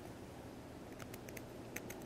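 Faint small ticks and scratches of a pencil point on a concrete pier, marking the spot under a plumb bob, coming as a scatter of light clicks in the second half.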